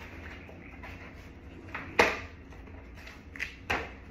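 Handling noise from a mat with a strap being folded and rolled up by hand. There are two sharp knocks, one about two seconds in and the louder of the two, the other just before the end, with a few fainter ticks and a low steady hum under it all.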